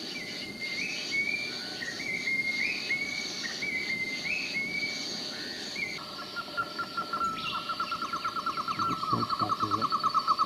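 Wild forest birdsong: short phrases of whistled notes stepping up and down for about six seconds. Then a rapid, even pulsing trill takes over, with a steady high insect-like buzz underneath.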